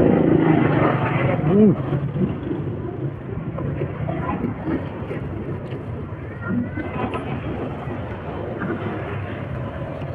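Roadside traffic noise with a motor vehicle's engine hum, loudest in about the first second, then settling to a steady lower background. A short voiced murmur comes near the start.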